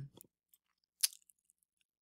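Near silence with a few faint small clicks, the sharpest one about a second in.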